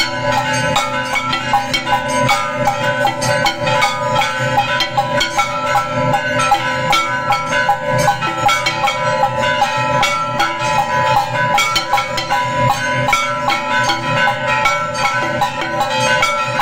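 Temple aarti accompaniment: bells ringing continuously over drums and cymbals struck in a fast, steady rhythm.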